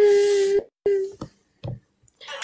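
A girl's voice holding a long, level-pitched wail, then a shorter one at the same pitch about a second in.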